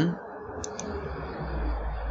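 Computer mouse button clicked twice in quick succession, over steady background hiss, with a low rumble in the last half second.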